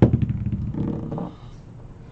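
A metal twelve-sided die thrown onto a padded playmat: a sharp hit, then a quick clattering tumble that dies away within about half a second as it rolls to a stop.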